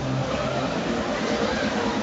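Fairground Schlittenfahrt (sled ride) running at full speed, its sleds rushing steadily round the hilly circular track.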